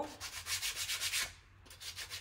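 Sheet of sandpaper rubbed by hand over the edge of a painted wooden cutout, distressing the edges: quick back-and-forth strokes, a short pause a little past halfway, then a few more strokes near the end.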